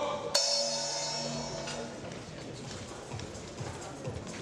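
Boxing ring bell struck once about a third of a second in, ringing and fading over about a second and a half, signalling the end of a round.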